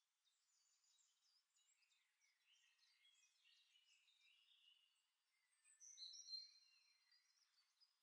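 Near silence, with faint distant bird calls; one call comes through a little clearer about six seconds in.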